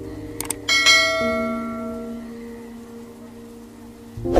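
Two quick mouse-click sounds followed by a bright bell ding that rings out and fades: a subscribe-button sound effect, over sustained background music chords.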